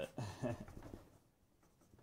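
Faint scratchy strokes of a paintbrush working black acrylic paint onto a canvas, a few soft scrubs in the second half.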